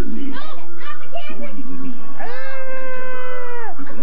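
A child's long, high-pitched cry, held for about a second and a half and dropping at the end, among children's voices during a pillow fight.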